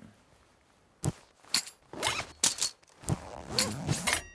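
A quick series of sharp clicks and short swishes, about six of them, starting about a second in after a quiet moment.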